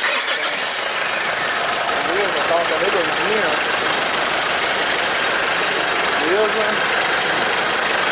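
Mitsubishi Pajero Full's 3.2-litre four-cylinder turbodiesel engine running steadily at idle, heard close up in the open engine bay. It runs well just after its intake and EGR system has been decarbonized.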